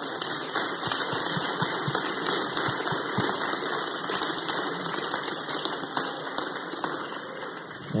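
A congregation applauding: many hands clapping in a steady, dense patter that holds at one level throughout.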